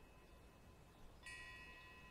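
Near silence with a faint steady hum. About a second and a quarter in, a faint high ringing of several steady tones sets in, then stops just before the end.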